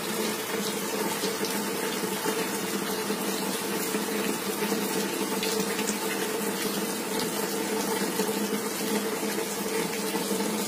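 Steady rain hiss, with a steady low hum underneath.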